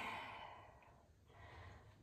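A woman's deep exhale, a sigh that fades out over about a second, followed by a fainter breath a little later.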